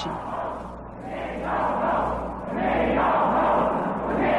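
A large crowd of demonstrators yelling and shouting together, the noise swelling about a second in and again after a brief dip, over a steady low hum from the old film soundtrack.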